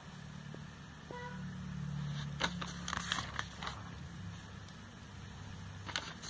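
Glossy catalogue pages being handled and turned: a few crisp paper rustles and crackles about halfway through, over a steady low hum.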